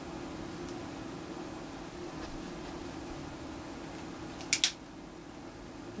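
Two sharp metallic clicks in quick succession about four and a half seconds in, the hammer of a Ruger New Model Single Six single-action revolver being cocked, over a steady low hum in a small room.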